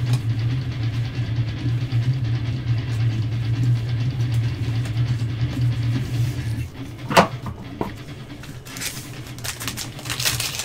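A steady low hum that stops about two-thirds of the way in, then a single sharp click, then the crinkling of a foil trading-card pack wrapper being torn open near the end.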